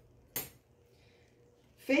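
Metal fabric scissors snipping once, a single short sharp metallic click, as a notch is cut at the fold to mark the middle of a quilted panel.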